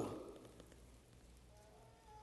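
Near silence: faint room hum as the echo of a man's last word dies away at the start, with a faint steady tone entering about halfway through.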